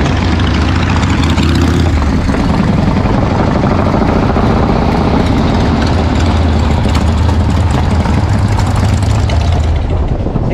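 V-twin motorcycle engines running steadily as the bikes ride slowly down a street.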